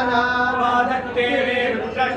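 Voices chanting a Sanskrit Vedic mantra on long, steady held notes.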